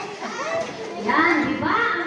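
Several high-pitched voices of children and women talking and calling out over one another, growing louder about a second in.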